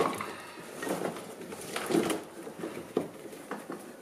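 Old sound-deadening floor mat being dragged out of a stripped Lada 2107 interior: scattered rustling and scraping with a few light knocks.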